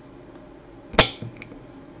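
A serrated knife blade knocking once against a ceramic plate as it cuts through a chocolate truffle candy, followed by a fainter click.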